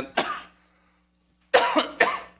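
A man coughing twice, a short cough just after the start and a longer one about a second and a half later.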